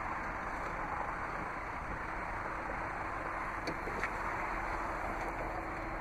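Ford Flex power liftgate opening: a faint motor hum under steady outdoor background noise, with two light clicks about four seconds in.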